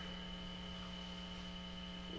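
Steady electrical mains hum: a low buzz with a ladder of fainter evenly spaced overtones and a thin high tone above it.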